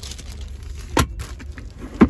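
Centre-console armrest lid of a car being swung shut, closing with a single sharp knock about a second in, over a low steady hum.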